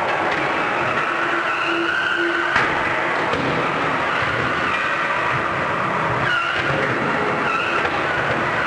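Combat robots' electric drive motors whining, rising and dipping in pitch as they drive, over a steady wash of arena noise, with a single knock about two and a half seconds in.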